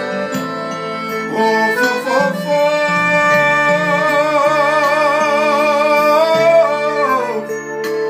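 A man singing to piano-accordion accompaniment, holding one long note with a wide vibrato through the middle before the line falls away near the end.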